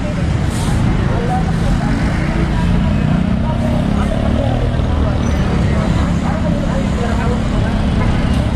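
Steady low rumble of a nearby motor vehicle engine running, with street voices in the background.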